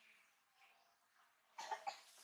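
A brief cough, two or three quick pulses about a second and a half in, against near silence.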